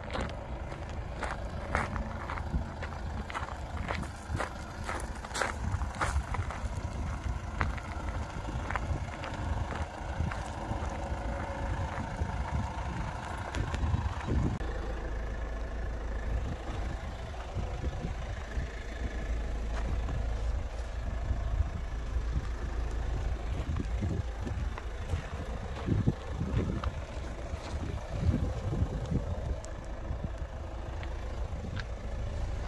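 Footsteps crunching on gravel over a steady low rumble, with the clicks and knocks of a car's doors being opened in the second half.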